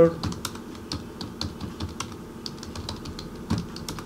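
Computer keyboard being typed on: a quick, irregular run of key clicks, about five or six a second, with one louder clack about three and a half seconds in.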